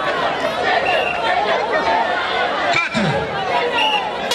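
Crowd of spectators in a stadium chattering and shouting, many voices overlapping into a steady babble.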